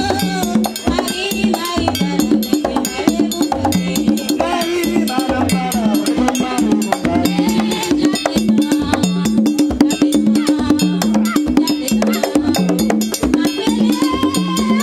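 Haitian Vodou music: drums beating a steady repeating rhythm under sharp percussion clicks, with voices singing over it.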